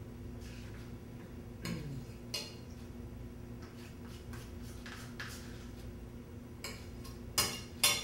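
A metal spoon scraping and tapping as soft cream cheese is spooned from its tub into a frying pan, with a few sharp clinks; the loudest two come near the end, about half a second apart. A steady low hum runs underneath.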